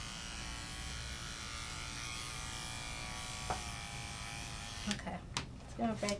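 Cordless electric dog clippers running with a steady hum as they trim the hair between a standard poodle's toes. The hum stops about five seconds in, followed by a couple of sharp clicks.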